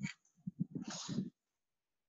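A brief, faint mouth and breath sound from the lecturer, starting about half a second in and stopping a little after a second, then silence.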